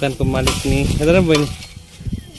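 A woman talking, with the scrape and clink of a spoon stirring food in a bowl under the voice.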